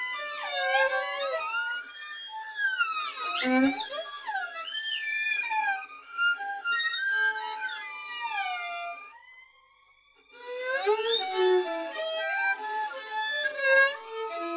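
Experimental instrumental music of many layered pitched tones that slide and bend in pitch, with no bass. About nine seconds in it thins for roughly a second to a single faint rising tone, then the layers come back.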